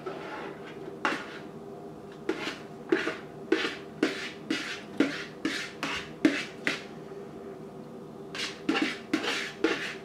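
White plastic spoon tapping and scraping against a plastic mixing bowl as cooked elbow macaroni is scooped out into a larger bowl. The short knocks come about twice a second, with a quicker cluster near the end.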